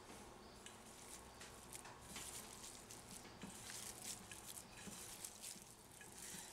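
Hands kneading raw ground pork in a bowl, a faint, irregular squishing.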